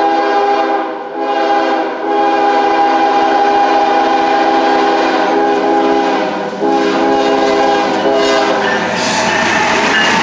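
Norfolk Southern freight locomotive's multi-note air horn blowing as the train approaches, in long blasts with short breaks about one, two and six and a half seconds in. The last blast ends about nine seconds in, and the noise of the locomotives passing close by takes over.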